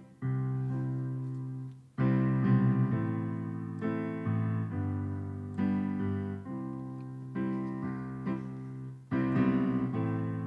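Yamaha digital piano playing slow, sustained chords, a new chord struck every second or two, with stronger chords at about two seconds and about nine seconds in.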